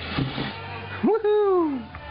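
A single loud cry about a second in that jumps up in pitch and then slides slowly down, lasting under a second.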